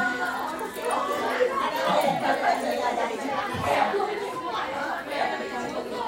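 Indistinct chatter: several people talking at once, with no single clear voice.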